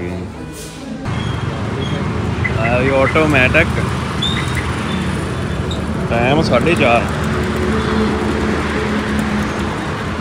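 Steady roadside traffic noise with a low hum, starting about a second in, and brief voices twice, around three and six and a half seconds in.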